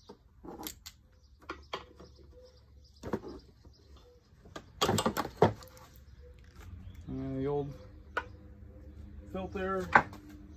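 Scattered clicks and clatter of hand tools and plastic mower parts being handled while a mower's fuel filter is taken out, with a louder rattle about five seconds in. A man's voice is heard briefly twice, without clear words.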